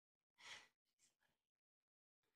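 Near silence broken by one short breathy exhale from a person about half a second in, followed by a faint tick.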